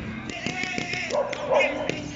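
A dog barking twice in quick succession, a little past the middle.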